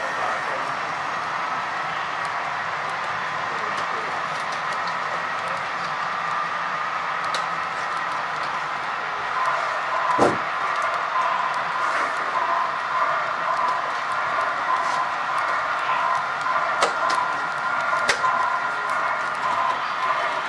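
HO-scale model freight cars rolling along the track: a steady running noise with a faint whine that grows a little stronger about halfway through, and a few sharp clicks, the loudest about ten seconds in. Voices murmur in the background.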